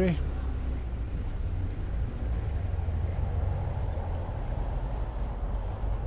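Steady low rumble with a faint, even hiss above it, with no clear events.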